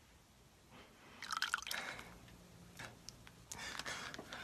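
Short wet sounds of water being handled: drips and small splashes in three or four brief bursts, the loudest about a second and a half in. A faint low hum comes in about halfway.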